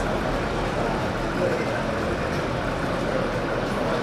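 Steady road-traffic and vehicle-engine noise with a low rumble.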